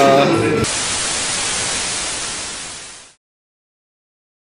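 Hiss of white-noise static, an editing transition effect, cutting in abruptly about half a second in and fading out by about three seconds in.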